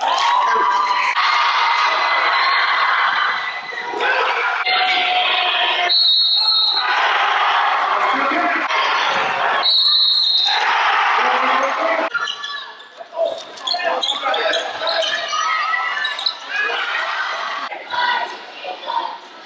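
Live high-school basketball game sound in a gym: crowd chatter and shouting, a basketball bouncing on the hardwood, and two short shrill referee whistle blasts, about six and ten seconds in.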